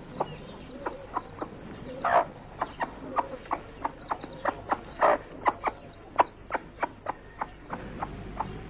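Chickens clucking in quick short notes, with louder clucks about two and five seconds in, and faint high chirping above them.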